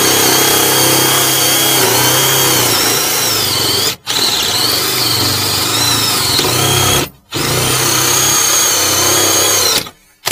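Power drill running a hole saw through a sheet-metal floor plate, in three runs with brief stops about four and seven seconds in. The high whine dips and rises as the saw bites into the metal.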